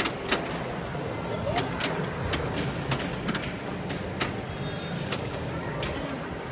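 Wheel of Fortune pinball machine in play: irregular sharp clicks and knocks of the flippers, bumpers and ball, over the steady din of an arcade hall.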